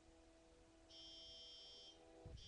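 Near silence: room tone with a faint steady hum, and a faint high-pitched electronic whine for about a second in the middle.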